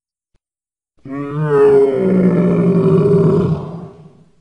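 Sauropod dinosaur call sound effect: one long, loud, low bellowing roar that starts suddenly about a second in, wavers in pitch at first, then holds and fades out near the end.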